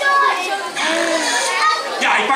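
Children's voices chattering and calling out.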